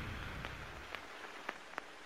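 A low rumble dying away, then faint, sparse crackling clicks, a few each second, over a soft hiss.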